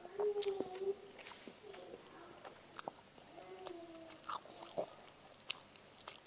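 A person chewing a piece of pempek fish cake, with scattered small mouth and spoon clicks, and two short closed-mouth "mmm" hums of enjoyment, one near the start and one just past the middle.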